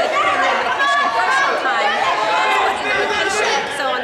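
Several spectators' voices chattering and calling out at once, overlapping into an unintelligible crowd babble in a gym.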